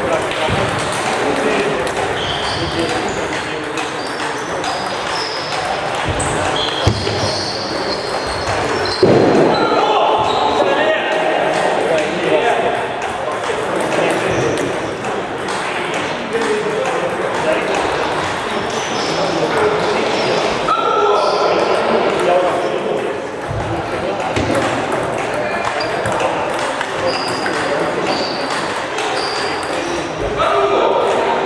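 Table tennis balls clicking off bats and tables at several tables at once, short sharp pings scattered all through, over a steady murmur of players' voices in a large sports hall.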